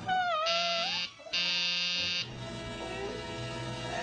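Experimental soundtrack: a wavering, gliding wail in the first second, cut through by two harsh buzzer-like bursts, then a low steady electronic drone.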